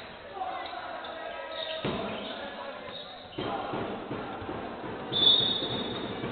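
Live basketball play in a gym hall: ball bouncing on the wooden court among players' calls, then a short, loud referee's whistle about five seconds in.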